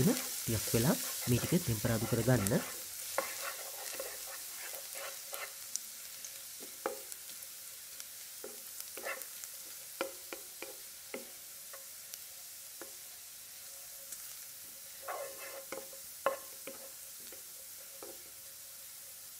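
Chopped garlic and ginger sizzling in hot oil in a nonstick wok. A wooden spatula stirs them, scraping and tapping against the pan now and then.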